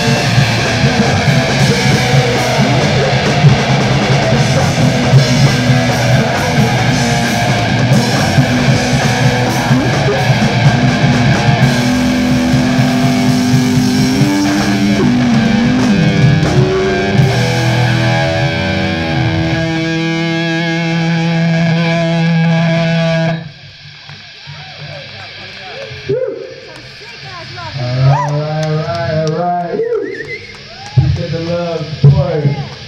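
Live punk/metal band playing loud distorted electric guitar, bass and drums. About two-thirds of the way through, the drums drop out and held guitar notes ring on, then the song cuts off suddenly, and voices follow at a much lower level.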